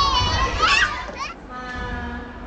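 Young children's high voices calling and squealing at play, stopping about two-thirds of the way in. A quieter steady held tone follows.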